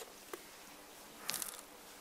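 Faint handling noises from a wooden board of crushed pumice being lifted: a light click, then a brief soft rattle of small clicks about a second and a half in.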